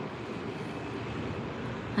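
Steady outdoor background noise, an even wind-like rush with no distinct events.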